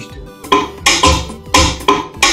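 A programmed rumba beat playing back from an FL Studio step sequencer. It has sharp snare-like cracks and low kick thumps in a syncopated pattern that comes in about half a second in, over a softer pitched backing.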